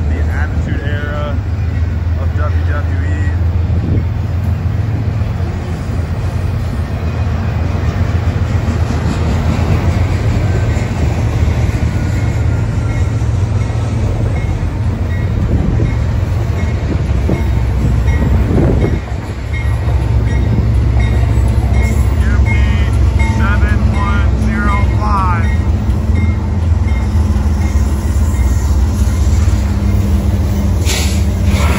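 Freight trains passing close: Union Pacific diesel locomotives drone low and steady as they come alongside, while a string of autorack cars rolls by on the adjacent track with a constant noise of steel wheels on rail.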